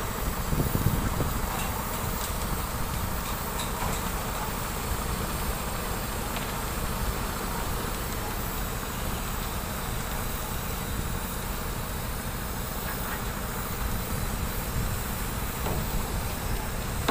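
Diesel construction machinery, the engine of the concrete mixer truck and pump line feeding the pour, running with a steady drone and low rumble, with a brief louder patch about a second in.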